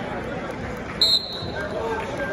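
Basketball bouncing on a gym's hardwood floor over background crowd chatter, with one short, high referee's whistle about a second in.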